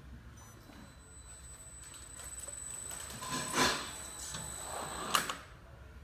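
Can depalletizer's lift carriage driven upward under power, a steady mechanical run with a faint high-pitched whine that grows louder, and a knock about halfway through. It stops with a sharp click about five seconds in as the can-height photo eye senses the top of the cans and halts the lift.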